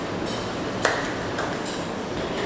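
A single sharp click a little under a second in, followed by a short ringing ping, over a steady background hiss.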